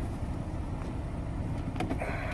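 A steady low rumble with a couple of sharp plastic clicks near the end, as the glove box's corner stopper is pushed up past its edge.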